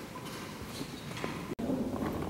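Room noise of people in a courtroom: faint knocks and shuffling of people moving, then a sudden break about one and a half seconds in, followed by a louder low murmur.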